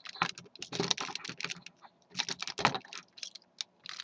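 Hard plastic parts of a Transformers Robots in Disguise Railspike figure clicking and knocking in quick, irregular succession as the pieces are pushed and fitted together, thinning out to a few scattered clicks near the end.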